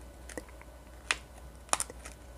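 A few faint, sharp mouth clicks with no voice: lip and tongue-tip releases as the alveolar consonants ㄴ ㄷ ㄸ ㅌ are mouthed silently. There are four clicks, the last two close together near the end.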